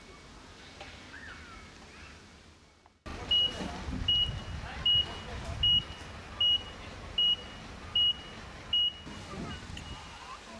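Electronic beeper sounding a single high tone about every three-quarters of a second, eight loud beeps in a row, then a few weaker ones, over a low rumble; it starts suddenly about three seconds in.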